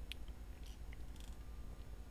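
Faint room tone with a steady low hum and a few soft clicks from a computer mouse as the page is scrolled.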